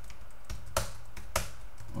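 A few scattered keystrokes on a computer keyboard, two of them louder than the rest.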